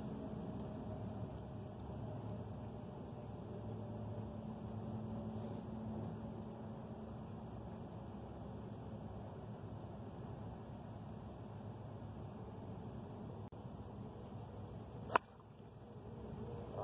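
Golf club striking a ball in a full tee shot: one sharp crack near the end, from a cleanly struck shot. Before it, only faint steady background noise.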